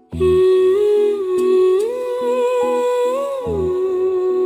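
Background song music: a wordless hummed melody line, held and gliding up partway through and back down near the end, over a soft pulsing accompaniment.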